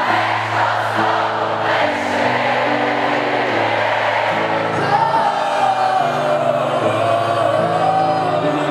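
Live band music with a crowd singing along in chorus. A high wavering melody line comes in about five seconds in over the sustained chords.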